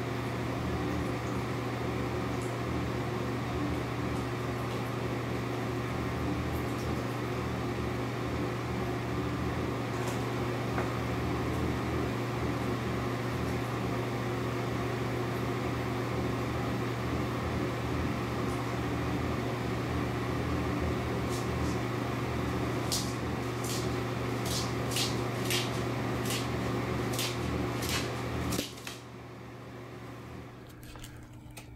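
Steady low machine hum of a fan or appliance running, with a run of about ten light, sharp clicks in the last several seconds. The hum cuts off shortly before the end.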